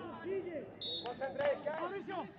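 Men's voices calling out on a football pitch, with one short, high referee's whistle blast about a second in.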